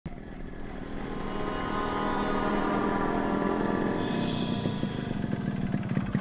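Crickets chirping in short trills that repeat a little under twice a second, over background music that swells with a rising hiss about four seconds in.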